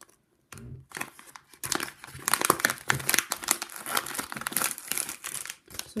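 A plastic nanoblock packaging pouch crinkling as it is pulled open and handled, starting about half a second in, a dense run of crackly rustling that grows busier after about a second and a half.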